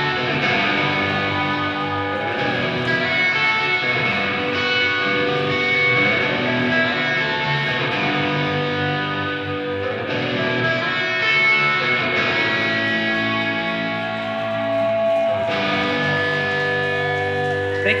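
Live rock band's song outro: electric guitar playing sustained, effect-laden chords that ring and change every couple of seconds.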